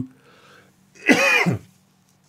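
A man clears his throat once, briefly, about a second in.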